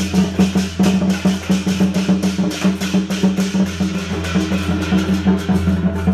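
Procession percussion music: drums and other percussion beaten in a fast, steady rhythm of several strokes a second, over a held low tone that pulses on and off.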